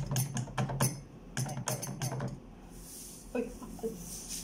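Clear plastic pouch crinkling and a plastic measuring spoon tapping on the metal rim of a blender cup while sweetener powder is scooped in: a quick run of clicks and rustles for the first couple of seconds, then a few softer taps near the end.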